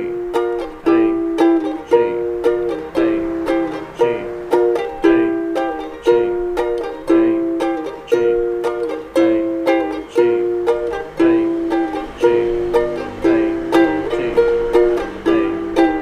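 Ukulele strummed in a steady, repeating rhythm, alternating between A and G chords.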